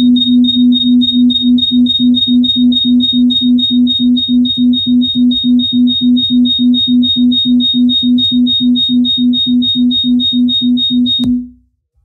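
A loud electronic tone pulsing evenly about four times a second, a low note with a thin high whistle above it, which cuts off suddenly near the end.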